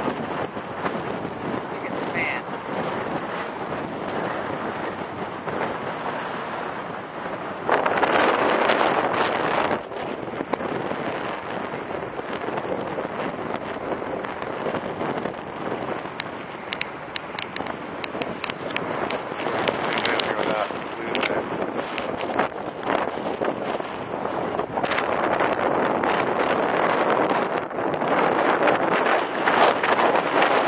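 Wind buffeting the microphone in gusts, with a strong gust about eight seconds in and scattered short clicks in the middle.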